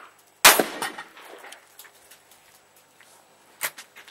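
A single rifle shot about half a second in, its report echoing briefly, followed by faint clicks and one sharp, much quieter crack near the end.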